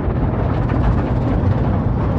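Movie trailer sound design: a loud, steady, deep rumbling drone with no speech or melody.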